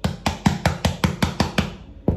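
A rapid, even run of about ten sharp knocks, about six a second, each with a low thump.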